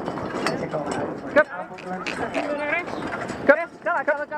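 Metal-framed driving carriage rattling and clattering as it is driven at speed behind a single horse, with the driver's short, repeated voice calls urging the horse on.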